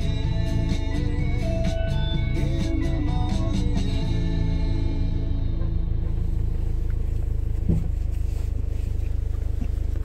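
Music playing on the car stereo, ending about halfway through and leaving the steady low rumble of the engine and tyres inside the car's cabin. A single short knock comes near the end.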